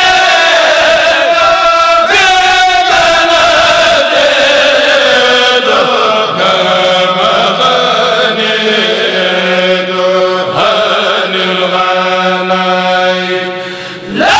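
A kourel, a group of men, chanting a religious poem together through microphones without instruments, in long held notes that slide slowly up and down. The phrase fades near the end before the next one begins.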